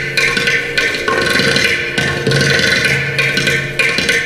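Mridangam and ghatam playing fast, dense Carnatic rhythm strokes over a steady drone, with no singing.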